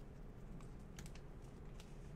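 Faint, scattered light clicks, a few irregular taps over the two seconds, above a low steady hum.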